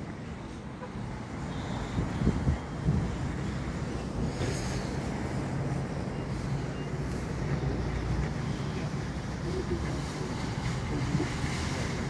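Steady low rumble of vehicles in a parking lot, with wind on the microphone.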